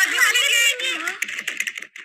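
Cartoon character voices vocalising quickly and excitedly without clear words, over a rapid patter of light clicks.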